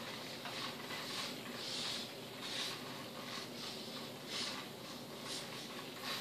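Faint rustling and soft brushing from a foam RC glider being handled and turned in the hands, as a handful of short, scattered brushes.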